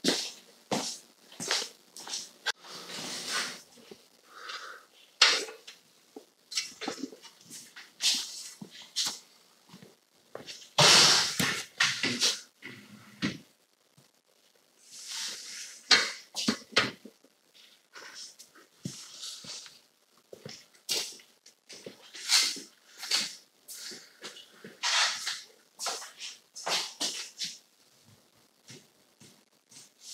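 Irregular taps, knocks and scratchy scrapes of a four-foot level and a pencil being worked against a wall while a level line is marked, with a few longer rasping scrapes.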